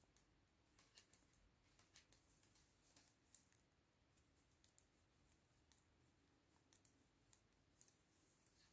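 Faint, irregular clicks of metal circular knitting needles tapping together as stitches are knitted, over near silence.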